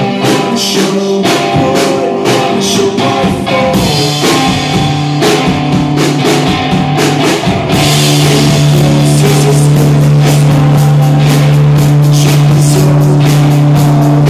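Live rock band playing: electric guitar, electric bass and drum kit. About halfway through it gets louder and moves onto a held chord under steady drumming and cymbals.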